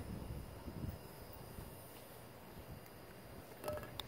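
Faint outdoor background noise, a low rumble, with a few light clicks near the end.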